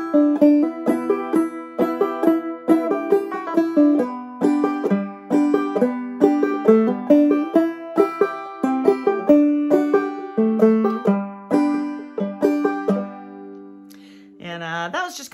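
Banjo played clawhammer style: a brisk run of plucked melody notes and brushed chords moving through E minor, C and D and landing on a G major chord near the end, which is left to ring and fade.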